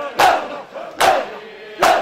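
Large crowd of mourners beating their chests in unison (matam): a loud collective slap about every 0.8 seconds, three of them, with crowd voices between the beats.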